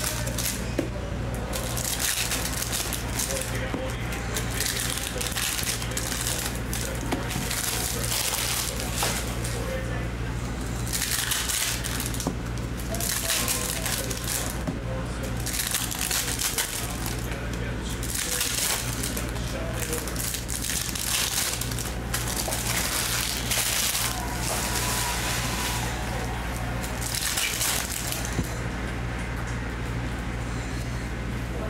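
Foil wrappers of Topps Chrome Cosmic baseball card packs crinkling and tearing as packs are ripped open one after another, in repeated bursts every second or two, over a steady low hum.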